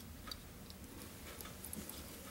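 Faint, scattered light ticks and clicks of fly-tying thread and bobbin being handled at the vise while the herl body is tied off, over a low steady room hum.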